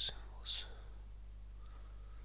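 A man whispering under his breath, with two short hissing 's' sounds at the start and about half a second in, then only a low steady hum.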